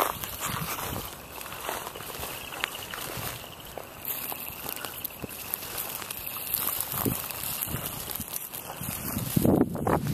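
Outdoor field ambience: a steady hiss with faint rustling and a few soft knocks, and a louder rustle near the end.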